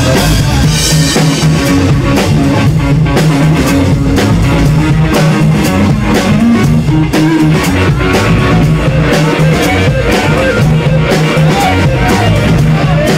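Live funk band playing a driving groove with drum kit, bass and guitar, recorded loud and close on a mobile phone.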